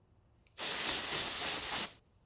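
Aerosol can of dry shampoo sprayed into the hair in one continuous hissing burst. It starts about half a second in and lasts just over a second.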